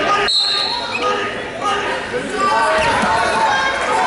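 Background voices of people talking in a large gym during a wrestling bout, with a short high-pitched squeak or tone lasting under a second, about a third of a second in.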